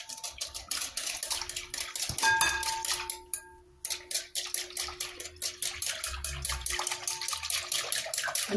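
Wire whisk beating a runny mixture in a glass bowl: quick, rhythmic clicking of the metal whisk against the glass with the liquid sloshing. The whisking stops briefly about three and a half seconds in, then carries on.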